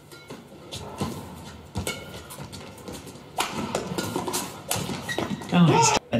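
Badminton rally: rackets strike the shuttlecock and shoes squeak and step on the court in a run of sharp knocks. About three and a half seconds in, crowd noise and voices swell up over it.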